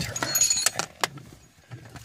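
Rustling and light metallic clinks from handling in a car's footwell, busiest in the first second, with a couple of sharp clicks and a quieter stretch after.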